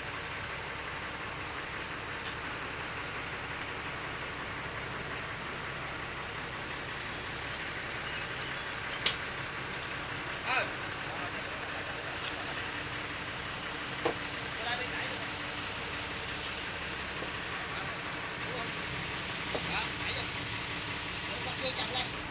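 Steady outdoor background noise with a few brief clicks scattered through it, and faint voices.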